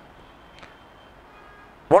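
A pause filled only by faint, steady room hiss, then a man's voice starts a word near the end.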